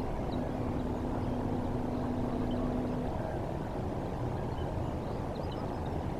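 Steady low outdoor rumble over open water, with a steady low hum for about three seconds near the start and a few faint, distant bird chirps.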